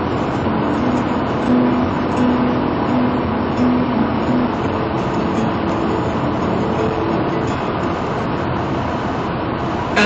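Steady road and tyre noise inside a car cruising at highway speed, with faint held tones underneath.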